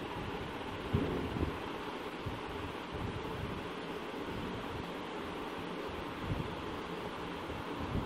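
Steady background hiss, with a few faint knocks and rustles from fabric being handled at a sewing machine, about a second in and again after six seconds.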